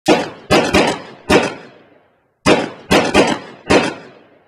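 A series of sharp impact hits, each dying away quickly: four hits, a brief pause, then four more.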